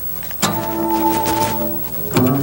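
Electric guitar: a chord is struck about half a second in and left to ring, slowly fading.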